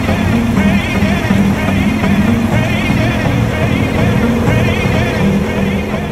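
Music soundtrack with pitched notes and a steady pulse laid over the footage.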